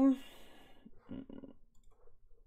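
A few faint computer mouse clicks in a small room, following the tail of a man's word and a breath at the start.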